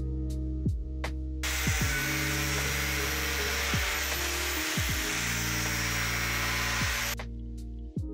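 Angle grinder cutting through a large black plastic pipe: a loud, steady grinding with a high whine that starts about a second and a half in and stops about a second before the end, over guitar background music.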